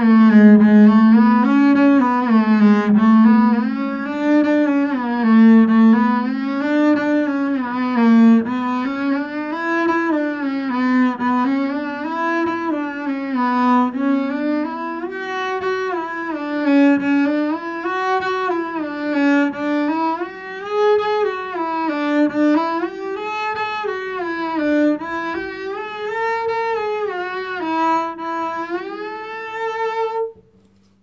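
Double bass played with the bow, running four-note shifting runs in A major: short stepwise groups going up and back down, each starting a little higher so the line climbs steadily. The highest notes are a little pitchy.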